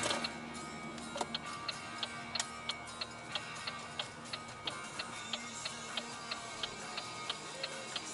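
Rock music playing on the car radio, with a steady sharp ticking about three times a second running through it.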